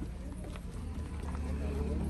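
Indistinct voices of a small group chatting, over a steady low rumble, with a few faint knocks.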